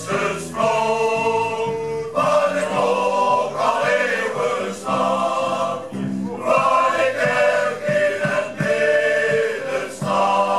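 Male shanty choir singing in harmony in long held chords, backed by a small band of accordion, guitar, keyboard and drums.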